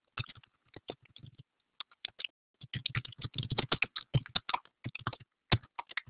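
Typing on a computer keyboard: a few scattered key clicks at first, then a fast, dense run of keystrokes from about two and a half seconds in, thinning out near the end.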